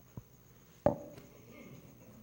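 A soft knock, then a sharp, loud thump about a second in that rings briefly before dying away.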